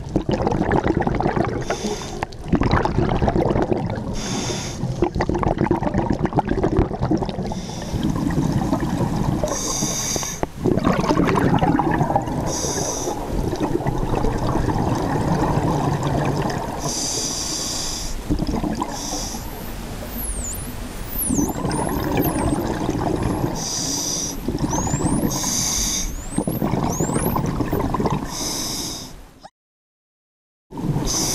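Underwater recording of a scuba diver breathing through a regulator: a hiss on each breath every two to three seconds, over a steady rumble of bubbles. In the second half several short high whistles sweep up and down, and the sound cuts out just before the end.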